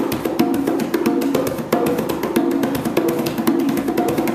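A conga played with bare hands in a fast, even run of strokes. It is the heel-toe exercise of palm, fingers, palm, fingers, then an open tone, repeated as a five-stroke group, with the open tones ringing out clearly.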